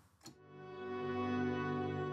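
Sustained ambient pad chord from the Midnight Grand sample library's "Shivers" atmosphere layer. It swells in softly about a third of a second in, with no sharp attack, then holds steady.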